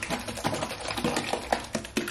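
A tube of tinted sunscreen shaken rapidly, its contents sloshing with a quick rattling patter, liquidy. The formula has separated and gone watery.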